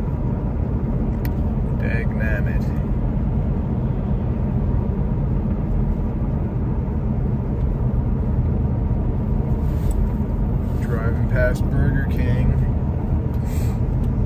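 Steady road and engine rumble heard inside a moving car's cabin. A brief voice sound comes about two seconds in, and a few more near the end.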